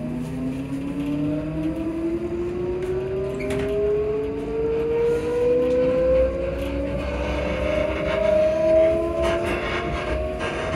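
ScotRail Class 334 electric train's Alstom Onix traction motors whining as the train accelerates, the whine rising steadily in pitch throughout, over a low rumble of the running gear, heard from inside the passenger carriage.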